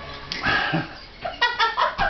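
A few short, high-pitched yelps: one about half a second in, then three or four in quick succession in the second half.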